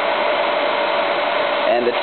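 Half-horsepower electric motor spinning the magnet rotor of a homemade magnetic induction heater at about 3,500 RPM: a steady whirring with one steady high tone, spinning freely without vibration while the heater is under load.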